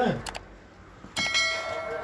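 A short click, then about a second in a bright bell-like ding that rings on and fades slowly: a notification-bell chime sound effect.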